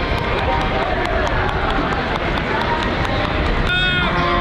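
Open-air football-ground ambience: indistinct voices with wind rumbling on the microphone, and a few hand claps in the first couple of seconds. The sound changes abruptly near the end.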